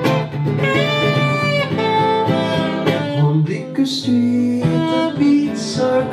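Live band playing an instrumental break: a saxophone carries the melody in held notes over a nylon-string acoustic guitar.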